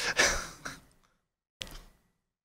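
A man's short, breathy laugh into a microphone, trailing off within the first second. After a pause, a brief soft breath-like sound comes near the end.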